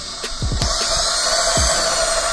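Cordless power drill spinning a spool to pull old fishing line off a spinning reel. About half a second in, its whine sets in and rises as it picks up speed. Background music with a low thumping beat plays underneath.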